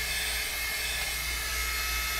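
Hot Tools hot-air blow brush running on a synthetic wig: the steady whir of its fan motor and rushing air, with a thin steady whine in it.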